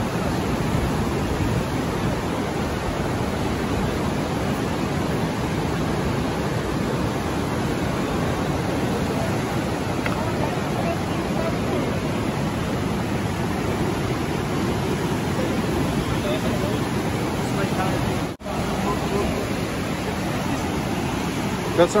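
Steady rush of the Niagara River's Whirlpool Rapids, white water tumbling over rocks in the gorge, with a brief dropout late on.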